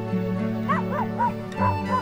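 Instrumental background music with long held notes. From just under a second in, a dog gives a quick run of short yips, about three a second.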